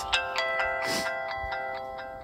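Verizon Wireless startup jingle playing from a Samsung Reality phone's speaker as it boots: a chord of held electronic notes that slowly fade out near the end.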